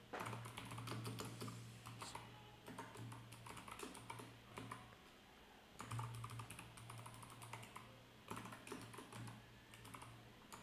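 Faint typing on a computer keyboard: runs of quick key clicks, with a pause of about a second in the middle.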